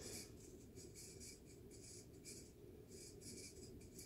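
Near silence: faint room tone with a soft, uneven high hiss.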